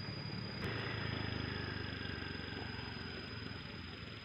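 A vehicle engine running steadily with a low hum, and a single click about half a second in.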